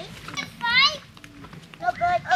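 Children playing and calling out, with one child's high-pitched shout about half a second in.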